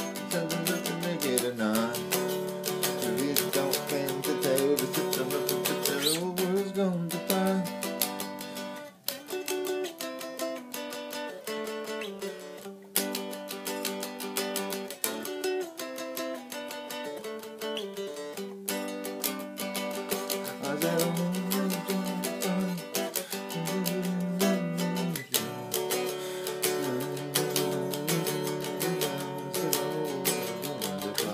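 Three-string cigar box guitar with heavy-gauge strings, tuned A–D–F♯, played as a country song, with brief pauses about nine and twelve seconds in.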